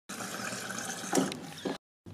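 Water from a refrigerator door dispenser running steadily into a drinking glass, with two short louder sounds about a second in and near the end.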